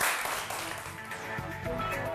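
Studio applause fading out over the first second as the quiz show's closing theme music comes in, with its notes starting about halfway through.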